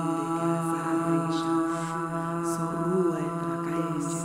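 A voice holding one long, steady chanted tone in light-language intoning, its pitch wavering slightly near the end.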